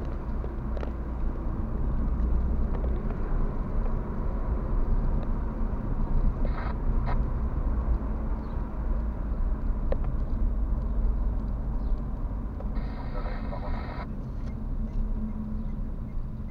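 Steady low rumble of a car's engine and tyres on a city street, heard from inside the cabin. A short higher-pitched sound comes in just before the 13-second mark and lasts about a second.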